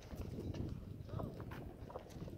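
Low rumble of wind on the microphone, with a few faint knocks of tennis balls bouncing on a hard court.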